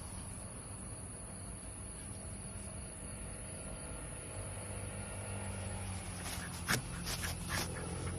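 Night insects, crickets, trilling in one steady high-pitched note over a low steady hum. A few brief clicks come near the end.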